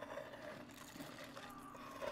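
A faint, steady hum made of a couple of low held tones over light hiss, with a faint tone falling slowly in pitch near the end.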